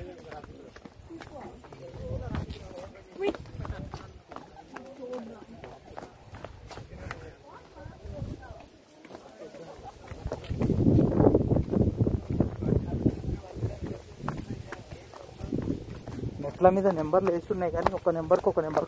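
Footsteps going down stone steps, a string of short sharp footfalls, with people talking nearby.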